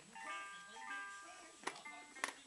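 Electronic baby toy playing a simple, tinny beeping melody, with a few sharp clicks, the loudest near the end.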